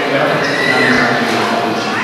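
Violins playing a Carnatic melody with sliding, ornamented notes, over mridangam drum accompaniment.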